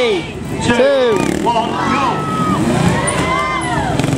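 Trials motorcycle engines revving up and down as two riders set off and hop across the blocks, under the announcer's and crowd's voices finishing the countdown.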